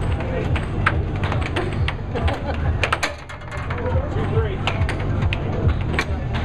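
Air hockey puck clacking sharply and irregularly against the mallets and the table's rails during a fast rally, over a steady low hum from the table's air blower.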